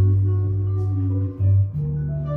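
Background music: a deep held bass note under a slow melody of sustained notes, the bass dropping out briefly about a second and a half in.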